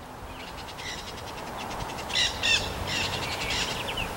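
Nanday parakeets calling: faint rapid chattering, two louder calls a little after two seconds in, then more chattering.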